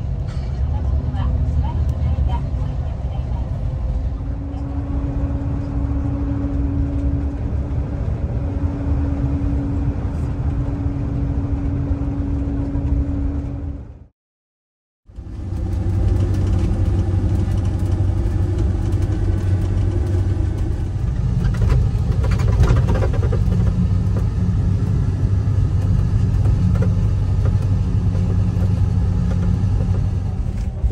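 Steady engine drone and road rumble inside a highway coach cruising on an expressway, with a steady whine over it. The sound drops out for about a second midway, then the same kind of steady engine and road drone goes on, with a stronger low hum.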